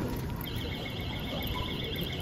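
A high electronic warbling tone with a quick, regular wobble and a fainter steady tone beneath it, starting about half a second in and lasting about two seconds, over a low steady background hum.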